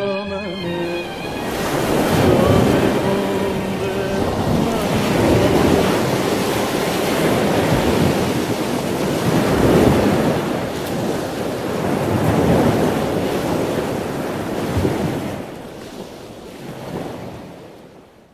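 Film soundtrack: a loud, rushing wash of noise that swells and ebbs every few seconds, with the last notes of a song dying away at the start. It fades out near the end.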